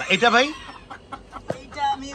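Chickens clucking, with one short call near the end and a single sharp click about a second and a half in.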